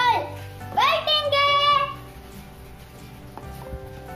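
A young boy's voice speaking in a lilting, drawn-out way for the first half, ending on one long held vowel, over light background music that carries on alone after he stops.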